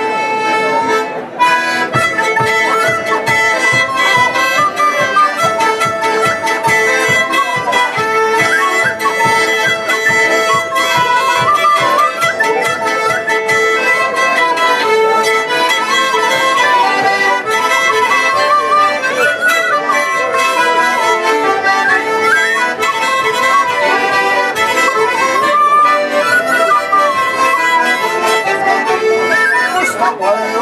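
A Swedish folk tune played on a diatonic button accordion, with an end-blown flute carrying a wavering melody over the accordion's steady, evenly pulsing chords.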